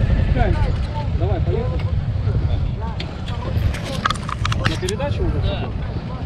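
Large adventure motorcycle engine idling with a steady low rumble, with a few sharp clicks about four seconds in and faint voices nearby.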